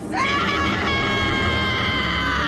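Anime voice actor screaming the name "Ace!" in one long held shout, its pitch rising at the start and then held steady.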